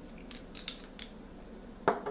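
Small plastic nail-polish bottles being handled on a table: light clicks and taps, then one sharper knock near the end.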